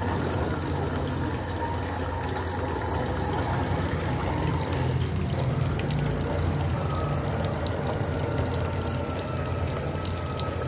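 Motor of a 2.5 m model barge running under way, a steady low hum with a faint whine that steps up in pitch about halfway through, over water churning at the hull.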